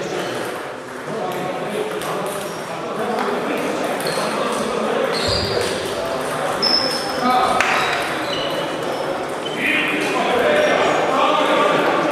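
Table tennis balls clicking off bats and tables in quick, irregular rallies at several tables at once, over a murmur of voices in an echoing sports hall.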